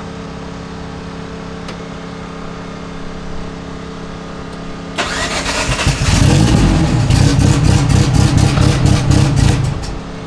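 Turbocharged 4G63 four-cylinder drag-car engine started about five seconds in, then run loud and rough with a fast crackle for about four seconds before it cuts off suddenly; a low steady hum underneath.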